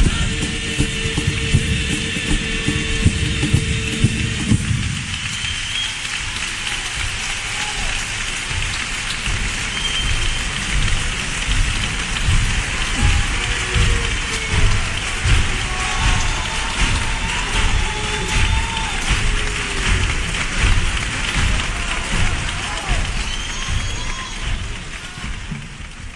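A comparsa's male choir and guitars hold a final chord, which stops about four or five seconds in. A theatre audience then takes over with loud applause, cheers and whistles, swelling about once a second, and the sound fades out at the end.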